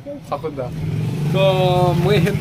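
A motor vehicle's engine running close by, a steady low rumble that gets louder from about half a second in, under a man's voice.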